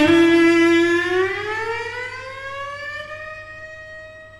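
Solo cello holding a bowed note, then sliding slowly up in pitch from about a second in and fading away as it settles on the higher note.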